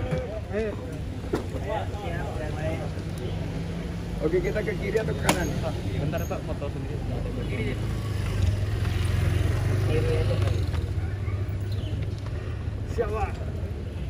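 A motor vehicle engine running with a steady low hum, growing louder about eight seconds in, under scattered voices. There is a single sharp click about five seconds in.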